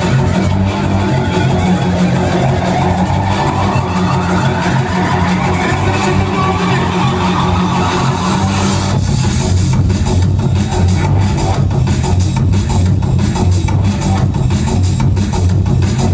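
Loud drum and bass DJ set over a club sound system, with heavy bass throughout. A rising sweep builds for several seconds, then the beat drops back in about nine seconds in with fast, dense drums.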